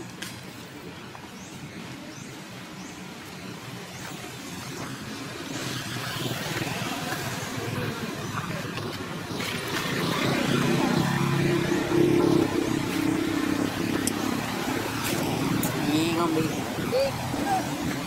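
A steady low drone, like a motor running, that swells in from about a third of the way in and holds, with indistinct voices in the background.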